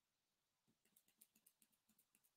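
Near silence, with faint small clicks from about a second in.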